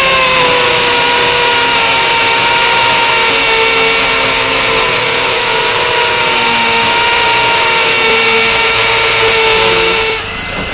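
Electric power drill running continuously, its motor whine dipping slightly in pitch as it comes under load and then holding steady, before stopping suddenly at the end.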